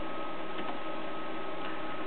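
A few faint key clicks from a ThinkPad R32 laptop keyboard, over a steady hiss with a thin constant whine.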